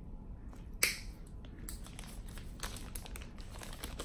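A nail nipper snaps through a thick fungal toenail with one sharp click just under a second in, followed by a run of small clicks and crinkles from a plastic specimen bag being handled.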